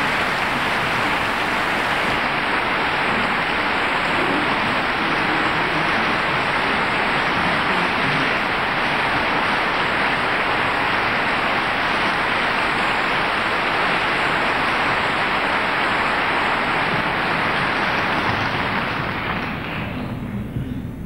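Audience applauding steadily in a concert hall, dying away near the end.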